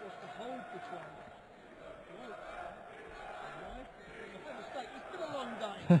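Darts arena audience talking among themselves between legs: a steady hum of many overlapping voices, with a single man's voice coming in loudly right at the end.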